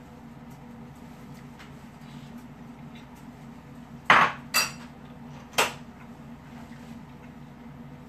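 A metal spoon knocking against a ceramic bowl: a few faint clicks, then three sharp clinks in the second half, over a low steady hum.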